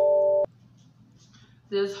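A held chord of a few steady tones, the tail of chime-like background music, cutting off abruptly about half a second in. Then near silence until a voice begins at the very end.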